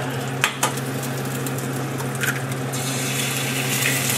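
Sliced sausages sizzling in a frying pan on a gas stove, a steady hiss with a low hum underneath, broken by a few sharp clicks and taps against the pan.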